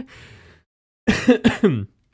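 A man's short laugh breaking into a cough: three quick voiced bursts about a second in, after a fading breath.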